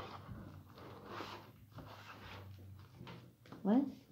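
Soft rustling and handling noises as objects are moved about, two brief swishes among them, followed near the end by a short spoken "what".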